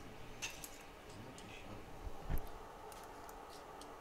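Faint, scattered small clicks and ticks of handling at a repair bench as DC power supply leads are hooked up to a phone logic board, with one soft low thump a little past the middle.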